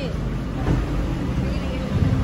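Car engines idling in a stalled queue in an underground car park: a steady low rumble, with faint voices behind it.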